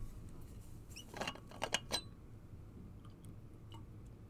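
A steel water bottle being picked up and its cap worked open: a quick run of small clicks and scrapes about a second in, then a few faint ticks.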